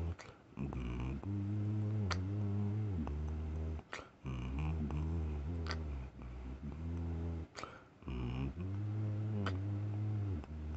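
A man humming a slow tune in a low voice: long held notes that shift in pitch from one to the next, broken by short pauses about every two seconds.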